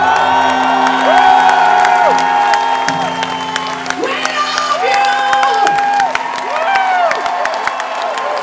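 Live rock band playing the close of a song, with the crowd cheering, whooping and clapping over the music.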